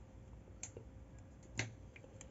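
Two faint, short clicks, the second louder, from handling a metal rhinestone mesh strip against a ribbon bow.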